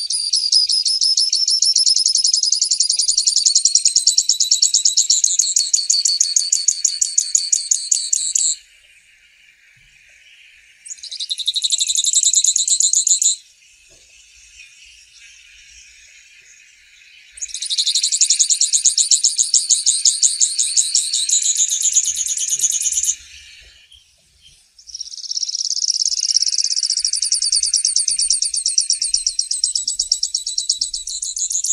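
Grassland yellow finch (Sicalis luteola) singing long, rapid, high trills of fast repeated notes in four bouts. The bouts are broken by short pauses in which a faint steady hiss carries on.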